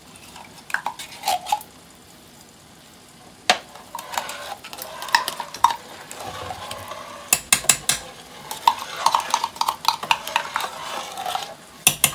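Metal spoons scraping and tapping inside a tin can of tomato paste and against a stainless steel pot as the thick paste is scooped out and stirred into tomato sauce. Scattered sharp clinks, sparse at first and busier from about four seconds in, with a quick run of clinks a little past halfway.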